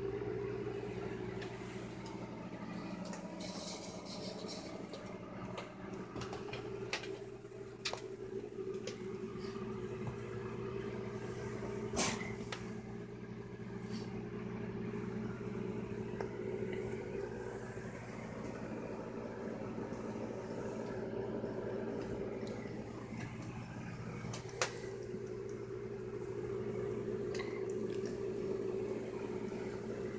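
Steady droning hum of a dense mass of honeybees crowding a glass observation hive, with bees on the wing around it. A few sharp clicks break through, the loudest about twelve seconds in and another near twenty-five seconds.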